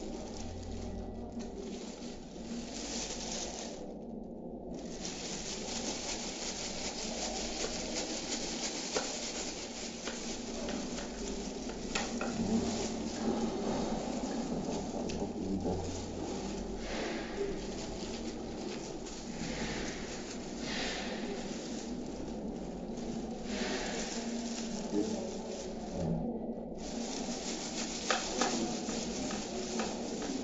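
Rustling from clear plastic gloves and light clicks and knocks from a plastic laser toner cartridge (for an HP LaserJet 402dn) as it is turned over and handled; a steady rustling noise with occasional sharp clicks.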